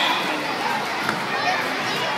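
Many children's voices shouting and chattering over one another, a steady din with no single voice standing out.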